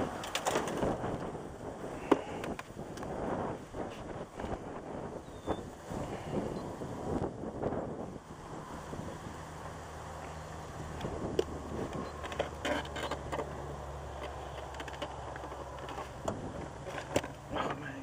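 Scattered clicks and knocks from a caught catfish being handled and unhooked on a metal boat deck. A low steady hum sets in about eight seconds in and carries on under the handling noise.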